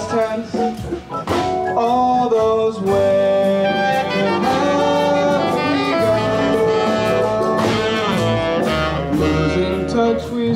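Live band music: an ensemble with double basses and saxophones plays a passage of a jazz-inflected song between sung lines, with sustained held notes over a steady bass.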